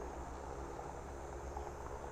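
Faint, steady hum of a DJI Agras T20 six-rotor sprayer drone flying its spray run at a distance.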